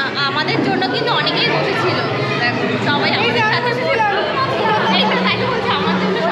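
Several people talking at once in an indoor room, overlapping chatter with no single clear voice. A steady low tone comes in about five seconds in.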